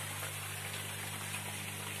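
Water pouring steadily from a PVC inlet pipe into a gravel-filled aquaponics grow bed, a steady splashing hiss with a low hum underneath.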